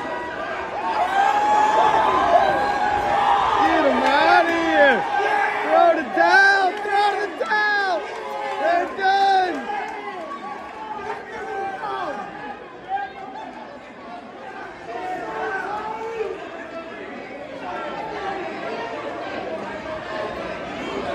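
Ringside boxing crowd in a hall shouting and yelling, many voices overlapping at once. It is loudest in the first half and dies down to quieter chatter after about ten seconds.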